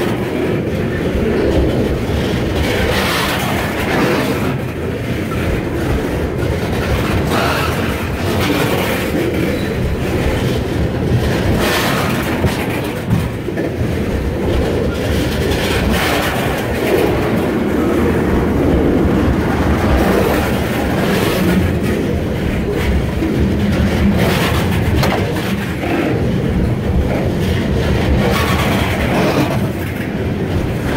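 Freight train cars rolling past at close range: a steady, loud rumble of steel wheels on rail, with recurring clatter as the wheels pass over rail joints.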